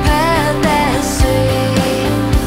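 Pop-rock band music with a woman singing. Her vocal line bends up and down at first, then settles into a long held note about halfway through. Behind it run bass guitar, steady chords and drum hits.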